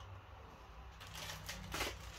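Plastic Oreo biscuit packet rustling and crinkling as it is handled, starting about a second in.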